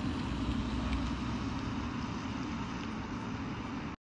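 An electric Tesla Model 3 driving away, its tyres rolling on asphalt, with no engine sound. The noise is steady and slowly fades as the car recedes.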